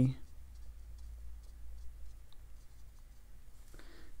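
Faint dabbing and stroking of a large round watercolour brush (Princeton no. 12 Neptune) on cold-press cotton paper, as small soft scratches and ticks over a low steady hum.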